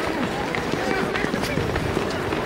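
Footsteps of a large crowd of runners passing on a tarmac road, a dense irregular patter, mixed with several people's voices talking and calling.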